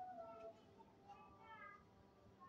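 Faint bleating of a young goat: two short, high cries, the second starting about a second in.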